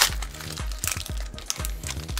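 Foil Pokémon TCG booster pack crinkling and crackling as it is handled and opened, in many short sharp crackles.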